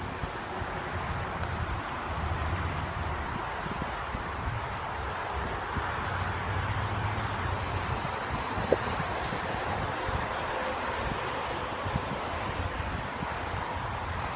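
Wind buffeting a phone's microphone outdoors, a steady hiss with an uneven low rumble, and one brief click about two-thirds of the way through.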